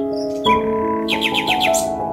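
Gentle piano background music with held notes, overlaid in the second half by a quick run of about six high, bird-like chirps.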